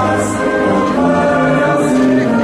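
A choir singing a slow hymn in long held chords, the entrance hymn that opens a Catholic Mass.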